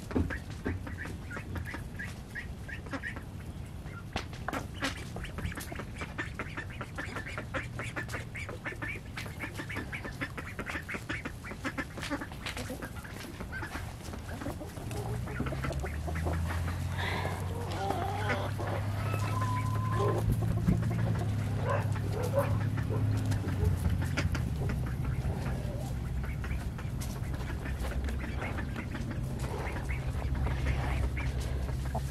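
Ducks quacking in short repeated calls, with chickens calling among them. About halfway through, a low steady hum comes in underneath and stays.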